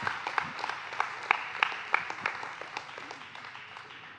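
A church congregation applauding, the clapping thinning and dying away over the few seconds.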